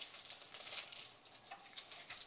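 Plastic wrapping being peeled off a cooked ham by hand: a faint, irregular run of small crinkly clicks and crackles.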